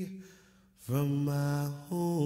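A cappella singing: a held note fades out just after the start, and a new, lower note is sung and held from about a second in.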